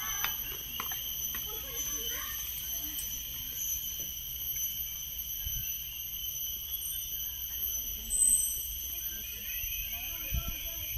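Steady high-pitched drone of forest insects, several pitches held at once, over a low rumble of wind and riding noise. A brief louder high chirp comes about eight seconds in.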